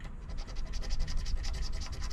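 The edge of a poker chip scraping the silver coating off a scratch-off lottery ticket in rapid back-and-forth strokes.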